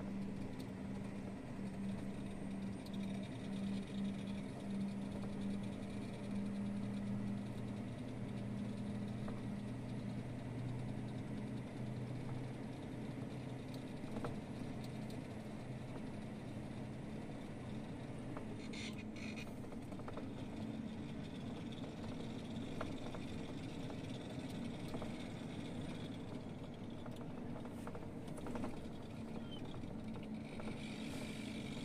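Lorry's diesel engine running steadily while cruising on the highway, a constant low drone with road noise, heard from inside the cab.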